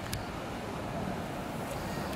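Steady low background rumble of outdoor ambience, with no distinct event such as a horn.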